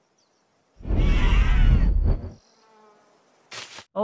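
A loud buzzing sound, like a flying insect, with a wavering pitch. It starts about a second in and lasts about a second and a half. A short, fainter burst follows near the end.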